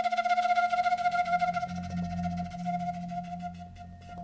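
Bansuri (Indian bamboo flute) holding one long note with a fast, wavering pulse that fades near the end. A low bass note enters underneath about a second in, and a few light percussion taps come near the end.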